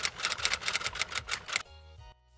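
Rapid typing clicks, about eight a second, from a typing sound effect, over a faint steady music bed. The clicks stop about one and a half seconds in.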